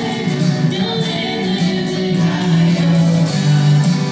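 Contemporary worship song performed live: a man and a woman singing together, accompanied by acoustic guitar and keyboard.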